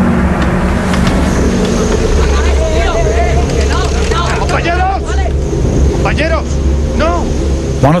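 A steady low rumble under held droning tones, with several short calls from about a third of the way in that rise and fall in pitch, like indistinct voices shouting.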